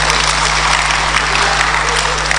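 Audience applauding, a dense, steady clapping that lasts the whole time.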